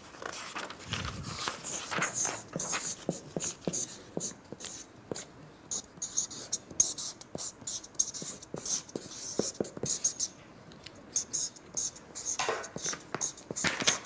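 Markers scratching on paper as two people write, in many short quick strokes, with a paper rustle near the end.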